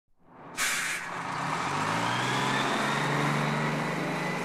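A large vehicle's air brakes hiss briefly about half a second in, then its motor runs with a steady hum that rises a little in pitch and holds, with a faint high whine.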